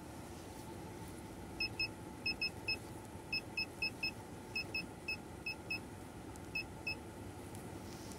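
Short, high electronic beeps from an OBD2 health checker (a CAN bus pin tester), about sixteen in quick pairs and threes, as its menu button is pressed to step through the connector pin tests. They begin about a second and a half in and stop about a second before the end, over a steady low hiss.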